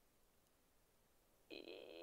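Near silence: room tone. Near the end, a short sound at one steady pitch begins.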